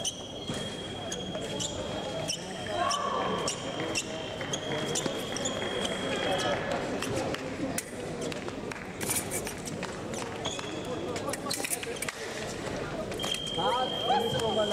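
Fencers' footwork taps and stamps on the piste with blade clicks, thickest in a flurry about nine to eleven seconds in, against the chatter of a large hall. An electronic scoring-box tone sounds steadily through the first six seconds and again from about thirteen seconds in, as the action stops.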